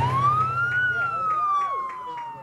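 A single siren-like wail: it rises quickly for just under a second, then falls slowly and fades, just after the music cuts out.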